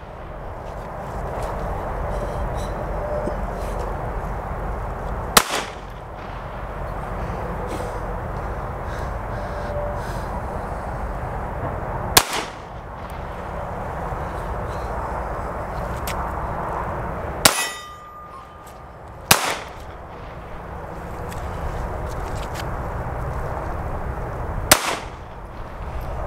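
Five single shots from a Walther PD380 .380 ACP pistol, spaced several seconds apart, fired with a deliberately limp wrist to test whether the slide cycles; the pistol keeps cycling through every shot. A brief ringing tone follows the third shot, and a steady rushing noise runs between the shots.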